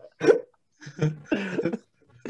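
Men laughing hard: a short burst of laughter just after the start, a brief pause, then a longer stretch of breathy laughter.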